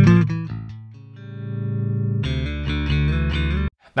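Bass guitar intro played back through the Gallien-Krueger 800RB bass amp plugin: a held note dies away, a swelling tone rises, then fuller notes play until playback cuts off suddenly shortly before the end.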